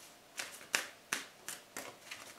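Five short, sharp clicks, a little under three a second.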